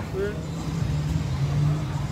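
Car engines running in slow-moving street traffic: a steady low hum that swells briefly in the second half, as a vehicle passes close.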